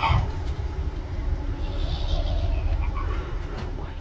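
A brief voice saying "No." right at the start, then a steady low rumble of outdoor background noise on a phone recording, with faint hiss above it.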